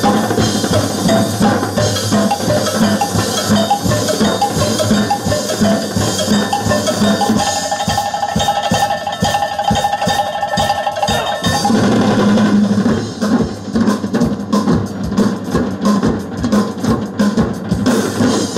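A percussion ensemble playing fast, loud rhythms with sticks on clear acrylic drums. About halfway through the low drum strokes thin out under a long held tone for a few seconds, then the full drumming comes back.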